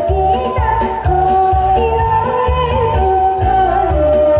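A young girl singing live through a handheld microphone over an amplified karaoke backing track, holding long wavering notes above a steady bass beat of about two pulses a second.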